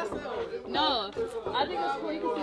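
Softer, indistinct talking: voices in chatter, no words clear enough to make out.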